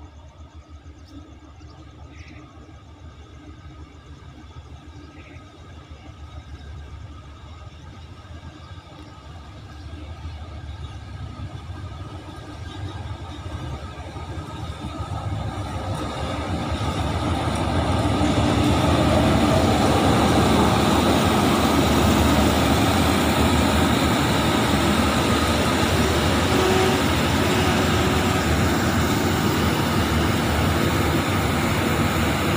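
A diesel-hauled express passenger train approaching and entering the station on the adjacent track: its sound grows steadily louder over about the first 18 seconds as the locomotive draws near, then becomes a loud, steady rumble as the carriages roll past close by.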